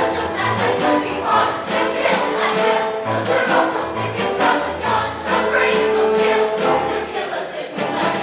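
A large chorus singing together with orchestral accompaniment: many voices holding long notes over a sustained bass line, as in a musical-theatre ensemble number.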